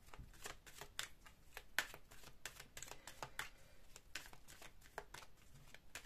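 A deck of oracle cards being handled and shuffled in the hands: faint, irregular clicks and rustles of the cards.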